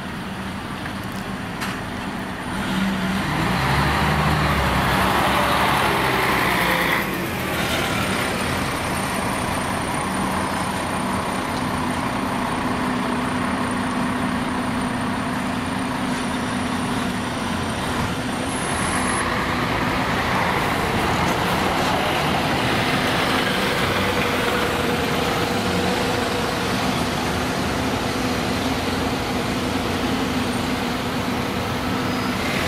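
Diesel city buses running and moving off, loudest from about three to seven seconds in, where it drops suddenly. A steady engine drone follows and swells again past twenty seconds.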